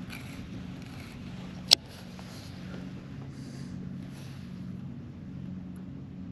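Steady low electric hum of a bass boat's trolling motor, with one sharp click a little under two seconds in.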